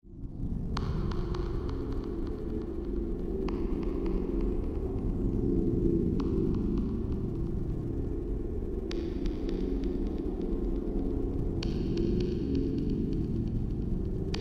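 A steady low throbbing hum, with a faint hiss above it that changes at each cut about every three seconds.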